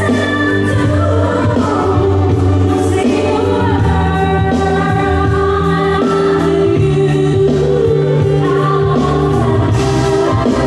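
Live band performing a ballad: a woman sings lead over hollow-body electric guitar, keyboards and drums, with cymbal strokes keeping a steady beat.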